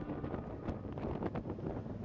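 Wind buffeting the microphone of a motorcycle-mounted camera as the bike rides along, an uneven rough rush with fluttering gusts.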